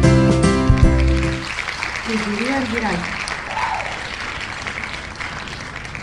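Spin music of an online name-picker wheel stopping about a second and a half in, followed by a recorded applause sound effect greeting the winner that slowly fades, with a voice briefly exclaiming over it.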